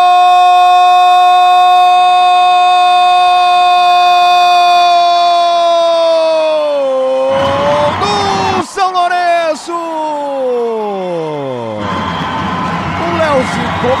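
A Brazilian sports commentator's drawn-out "goool" cry, held on one high note for about seven seconds before the pitch falls away. More shouted calls follow, sliding downward, over a noisy background.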